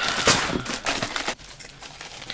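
Clear plastic zip-top bags of scrapbook embellishments crinkling and rustling as hands dig through and pull them out, busier in the first second and quieter after.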